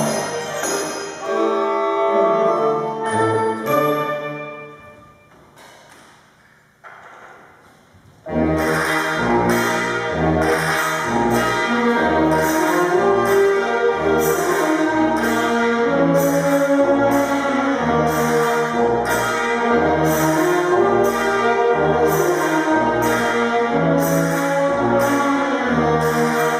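A school band with wind and percussion plays. Held chords fade away in the first few seconds, and after a short pause the full band comes back in loudly at a steady beat, with low drum hits and crashes under the brass and woodwinds.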